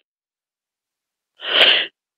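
A single short, sharp burst of breath noise from the speaker, about half a second long, coming about a second and a half in after dead silence.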